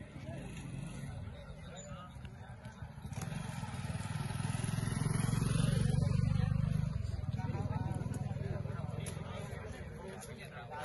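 A motor vehicle engine passing by: its low, pulsing rumble swells from about three seconds in, is loudest around the middle and fades near the end, over the murmur of a crowd.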